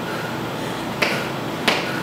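Two sharp clicks, one about a second in and one near the end, over a steady hiss.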